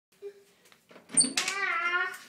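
A door click about a second in, followed by a loud, drawn-out, high-pitched vocal cry held at a steady pitch.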